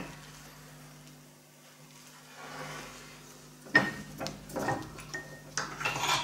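Quiet at first, then from a little past the middle a run of light metal clinks and knocks, a couple with a brief ring. They come from the steel parts of a UB100 bench-mounted bar bender being handled as the freshly bent flat bar is released.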